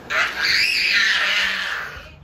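A young child's high-pitched shriek, held for most of two seconds, its pitch rising and then falling away.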